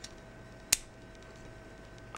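A single sharp metal click about three quarters of a second in, a folding implement of a Gerber 600 multitool snapping shut, with a faint tick or two of the tools being handled before it.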